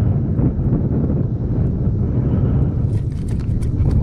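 Wind buffeting the microphone in a steady low rumble, with a few light splashes of water near the end.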